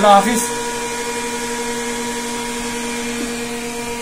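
Steady electrical hum from an industrial control panel that houses a variable frequency drive: several even tones held over a faint, even noise, unchanging in level.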